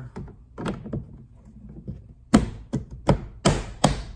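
Toyota Highlander's plastic liftgate trim cover being pressed back into place, with about five sharp plastic clicks and snaps in the second half as its clips seat into the hatch.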